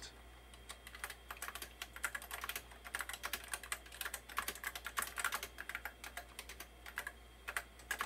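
Apple Lisa 2 keyboard being typed on: a quick, irregular run of key clicks, several a second, thinning out to a few strokes near the end.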